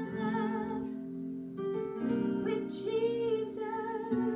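Electronic keyboard playing sustained chords in a piano voice, with a woman's voice singing a held, wavering melody over it in two phrases.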